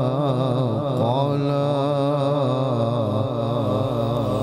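A man's voice in melodic Quran recitation (tilawat), one long drawn-out phrase held through without a break, its pitch wavering in quick ornamental turns.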